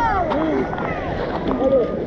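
Wave pool surf churning and splashing close to a waterproof action camera, with many people shouting and squealing over it, one high arching squeal right at the start.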